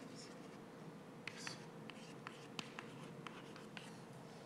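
Chalk writing on a blackboard: faint, irregular taps and short scratching strokes as words are chalked up.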